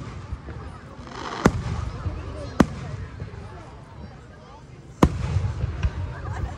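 Aerial fireworks shells bursting: three sharp bangs about one and a half, two and a half and five seconds in, the last the loudest and followed by a rumbling echo.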